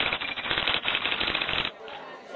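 Typewriter keys clattering in a rapid run of clicks, stopping shortly before the end, where faint music comes in.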